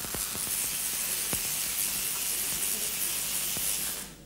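Tesla coil driven by a spark-gap transmitter, stepping the voltage up to about 250,000 volts: a steady loud hiss and crackle of high-voltage sparks streaming from its top terminal, with a few sharper snaps. It stops suddenly right at the end as the coil is switched off.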